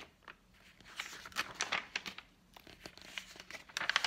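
Pages of a hardcover picture book being opened and turned by hand: irregular paper rustling and crinkling with a few sharper flicks.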